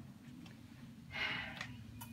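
Quiet hospital room tone, with a short, soft breath about a second in.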